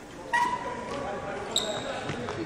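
Voices in a large echoing sports hall, with two short sharp sounds, one about a third of a second in and a higher-pitched one about a second and a half in.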